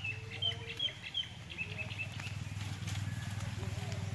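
Birds chirping outdoors, a quick series of short high calls in the first two seconds or so, over a steady low rumble.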